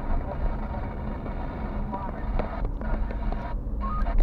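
Car driving on a city street, heard from inside the cabin: steady engine and tyre rumble with scattered small clicks and rattles.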